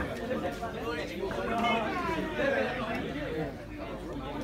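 People talking nearby: several voices chattering, no words clear enough to make out.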